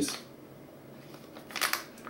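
Plastic snack wrapper of a packaged donut cake crinkling in the hands, a short rustle about one and a half seconds in.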